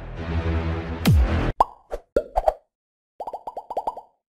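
Electronic music with a deep falling sweep that cuts off about a second and a half in, followed by a logo sting of cartoon plopping pops: a few spaced pops, then a quick run of about eight near the end.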